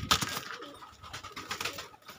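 Domestic pigeons in a wire cage, cooing, with two spells of rapid rustling clatter, near the start and about a second and a half in.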